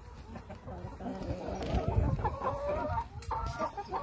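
Black Cochin chickens clucking, a run of short, repeated pitched calls beginning about a second in.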